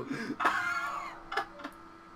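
A few sharp, separate clicks over a faint steady hum, with a trailing voice fading out in the first second.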